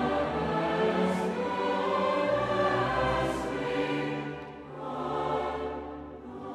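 Large mixed choir singing held chords, accompanied by a string orchestra. Sharp 's' consonants cut through about a second in and again after three seconds, and there is a short break between phrases near the five-second mark.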